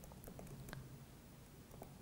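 Faint typing on a laptop keyboard: several light, irregularly spaced key clicks.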